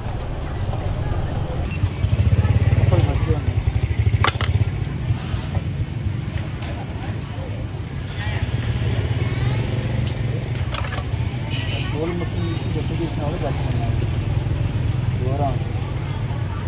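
Market ambience dominated by a motorbike engine running close by, a steady low rumble that swells for a couple of seconds early on, under scattered background voices. A single sharp click sounds about four seconds in.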